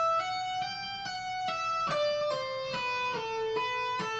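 Electric guitar playing an E minor legato lick, one pick per string with the other notes sounded by hammer-ons and pull-offs. Single notes follow one another at about two to three a second, stepping lower in pitch in the second half.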